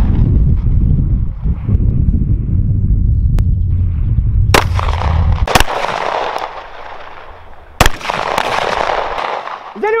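Glock pistol fired in single, deliberately spaced shots, about a second or more apart, each with a short echo. The three loudest shots come in the second half. A low rumble lies under the first half and stops about halfway through.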